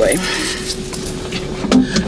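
Clothing rustle and light handling noises as someone leans across a car's front seat to stow something, over a steady hum with one held tone.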